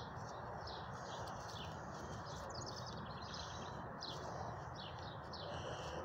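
Songbirds chirping and singing: a continuous run of short high notes with a quick trill about two and a half seconds in, over a steady outdoor background hiss.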